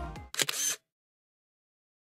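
Electronic dance music fading out, then a camera shutter click sound effect, two quick snaps about half a second in.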